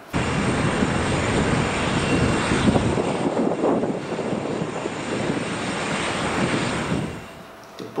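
Boeing 787 Dreamliner's jet engines running at high thrust on the runway, as on a takeoff roll: a loud, steady rush of engine noise that cuts in suddenly and fades away near the end.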